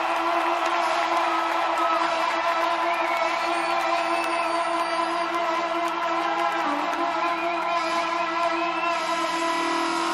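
Trombone holding one long unbroken note, sustained by circular breathing, over steady rock-band backing and arena crowd noise.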